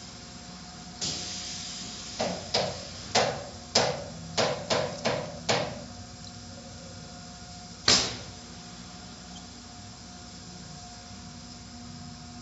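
Automatic car wash machinery heard from inside the car, a steady hum. Over it, a quick run of about eight sharp knocks against the car comes between two and six seconds in, then one loud knock about eight seconds in.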